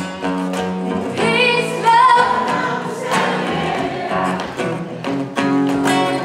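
Live acoustic performance: a woman sings a sustained, wavering melody over two acoustic guitars.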